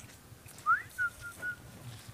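A high whistled call: one quick rising note, then three short level notes.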